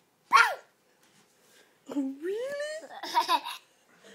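A toddler's short, high-pitched squeal, then about two seconds in a rising vocal sound that breaks into laughter.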